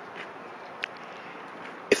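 Pause between a man's words filled with faint steady outdoor background hiss, with one brief high-pitched blip just under a second in; his voice comes back at the very end.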